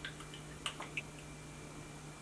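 A few faint, light clicks and taps of a utensil in a mixing bowl as an egg is broken up into the wet ingredients.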